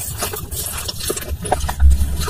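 Close-miked ASMR mouth eating sounds: quick wet clicks and smacks of lips and tongue working a soft sweet, with a low thump near the end.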